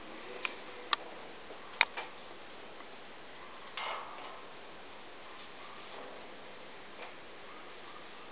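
Blue-and-gold macaw climbing on a metal wire cage: a few sharp clicks and taps as its beak and claws grip the bars, four of them in the first two seconds, then a short scrape at about four seconds and fainter taps after.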